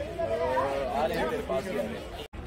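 Indistinct chatter of several people's voices, with no clear words.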